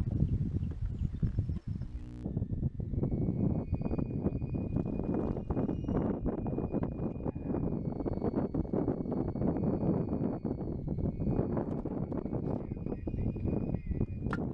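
Small waves lapping and slapping against an aluminum jon boat's hull in quick irregular knocks, over a steady rumble of wind on the microphone.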